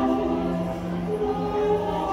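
Music with choir-like voices holding long notes, the chord shifting about every second.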